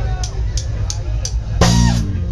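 Traditional ska band playing live: the drum kit keeps a steady beat of sharp strokes, about three a second, over a heavy bass. Near the end comes a loud full-band hit with horns, the loudest moment.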